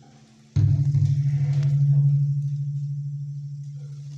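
Oud: the last notes of a phrase die away, then about half a second in a single low note is struck sharply and rings on, slowly fading.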